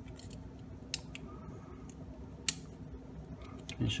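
Light clicks of 3D-printed PLA plastic parts being handled as a small pen spring is fitted into a two-piece door catch. There is a sharper click about a second in and a louder one about halfway through.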